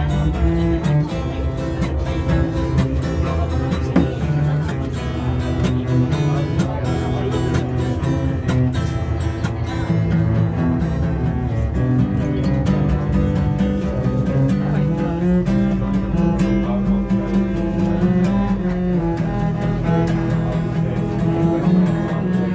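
A cello and an acoustic guitar playing a tune together: the bowed cello carries the melody in long held notes, over guitar accompaniment.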